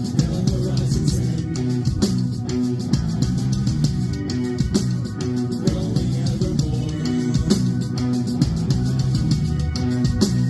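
Live rock band playing: electric guitars and bass over a drum kit, at a steady level.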